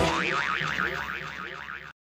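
A cartoon 'boing' sound effect: a springy tone that warbles up and down about seven times a second and fades away over nearly two seconds.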